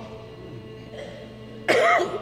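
A lull in the choir singing with only faint lingering voices, then a single loud cough close to the microphone near the end.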